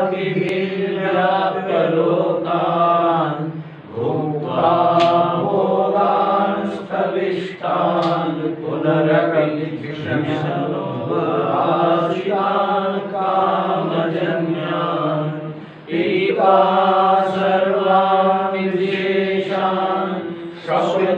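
A man chanting Sanskrit verses on a steady reciting pitch, pausing briefly for breath about four seconds in and again near sixteen seconds.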